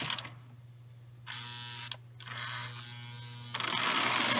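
Lionel 2046 O gauge steam locomotive's electric motor buzzing as it starts off slowly up a 3% grade with passenger cars, without wheel slip. It buzzes in two short spells, then runs steadily and louder from about three and a half seconds in, over a steady low hum.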